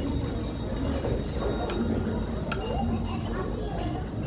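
Tableware clinking several times, short sharp chinks of cutlery and dishes, over the steady background hubbub of diners.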